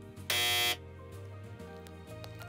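A game-show buzzer sound effect: one harsh, steady buzz about half a second long, the sign of a wrong answer in a quiz. Quiet background music continues under it.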